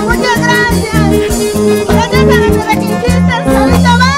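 Live Latin dance band music: a nylon-string electro-acoustic guitar plays a sliding, bending lead melody over steady bass notes and regular percussion.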